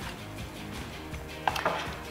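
Quiet background music, with a couple of light knocks about one and a half seconds in as a chef's knife is set down on the cutting board.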